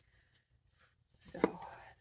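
Near silence, then a woman's voice says one short, breathy word ("So") a little over a second in.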